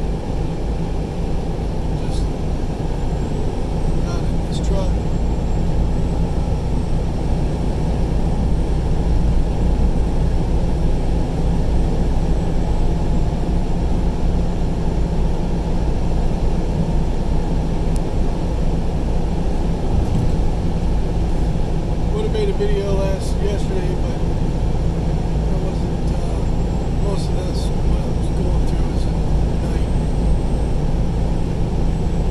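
Steady road and engine noise heard from inside a vehicle's cabin at highway speed, mostly a low rumble, with a few faint ticks or rattles now and then.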